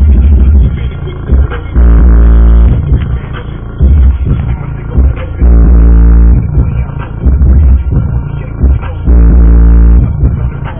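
Two Digital Designs DD 510 10-inch car subwoofers playing bass-heavy music, recorded close up inside the car. Long, deep bass notes of about a second come every couple of seconds, and the loudest of them max out the recording.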